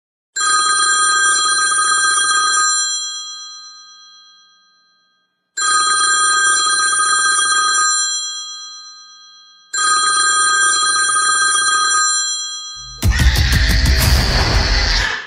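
A rotary-dial desk telephone's bell ringing three times, each ring about two seconds long with a fading tail and a few seconds' gap between rings. Near the end a sudden loud, noisy blast cuts in.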